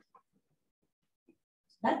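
Near silence during a pause in a talk, with speech starting again near the end.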